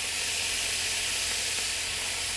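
White wine and oil sizzling in a hot stainless steel skillet around a seared Chilean sea bass fillet, a steady hiss.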